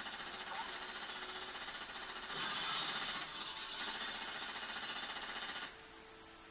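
Action-film soundtrack played through a TV speaker: a long burst of rapid automatic gunfire with glass shattering. It starts suddenly, gets louder about two seconds in and cuts off shortly before the end.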